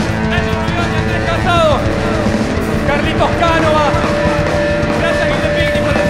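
Rock band playing live with electric guitars, bass and drums, in an instrumental passage with no singing. A lead line of sliding, bending notes runs through it, settling into one long held note from about three seconds in.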